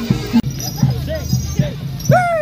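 Javanese barongan accompaniment: hand-drum (kendang) strokes in a brisk beat, with short voices over them. The sound changes abruptly about half a second in.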